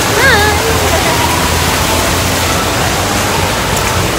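Ornamental fountain's vertical water jets splashing into their pool: a steady, even rushing of water.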